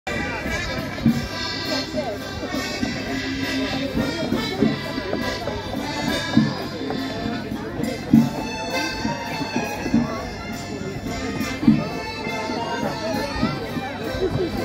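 Live waltz music played by a stage band on keyboard, with sustained reedy tones and a heavy beat landing about every two seconds.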